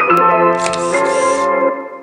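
Background music with sustained notes, over which a camera shutter sound effect plays: a sharp click just after the start, then about a second of hissing noise. The music fades out near the end.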